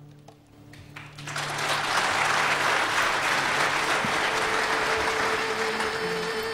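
An audience applauding. The clapping starts about a second in as the last held notes of the music die away, and builds to a steady, dense applause. A single held musical note comes in near the end.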